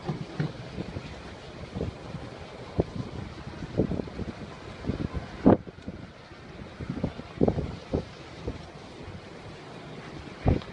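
Wind buffeting a phone's microphone: a steady rushing hiss broken by irregular low thumps, the strongest about five and a half seconds in.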